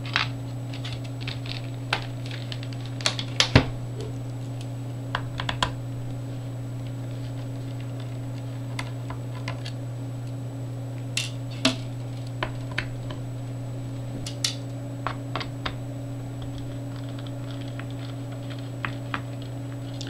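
Scattered light clicks and ticks of a small precision screwdriver and tiny screws against a laptop's metal bottom panel as its screws are taken out, in irregular clusters, over a steady low hum.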